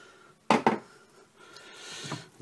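A wooden spoon knocking twice against the side of a steel cooking pot about half a second in, followed by quieter stirring of a thick, stodgy grain mash.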